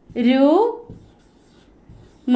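A woman's voice drawing out one long 'oh', rising in pitch, near the start. It is followed by the faint sound of a marker writing on a whiteboard.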